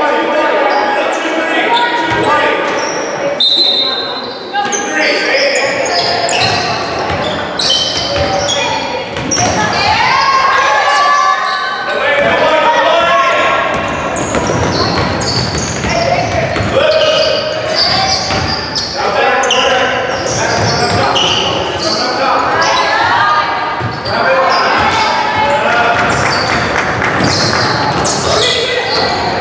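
Basketball game sounds in a large gym: a ball bouncing on the hardwood floor as players dribble, with players and spectators calling out and the sound echoing around the hall.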